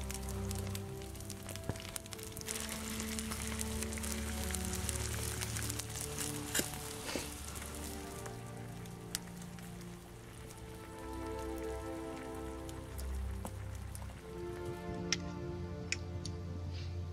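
Background music with held notes, over food frying in a pan on a campfire: a steady sizzle with scattered pops and crackles.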